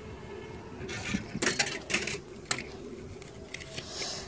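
Railway Permit to Travel ticket machine printing and issuing a permit after a 10p coin is inserted: a quick run of clicks and rattles starting about a second in and lasting over a second, over a faint steady hum.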